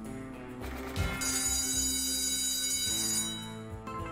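Online slot game audio: steady game music plays under the spinning reels. About a second in there is a sharp hit, then a bright ringing, like a bell, for about two seconds as the spin settles on a win.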